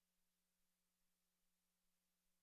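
Near silence: the feed's sound is essentially dead, with only a faint steady electrical hum and hiss.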